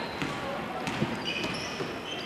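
A basketball being dribbled on a hardwood gym floor, a few separate bounces, over the murmur of a gym crowd.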